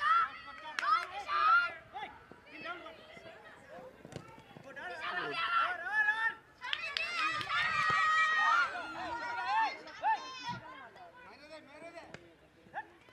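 Girls' voices shouting and calling during a football match, high-pitched, with one long held call about seven seconds in.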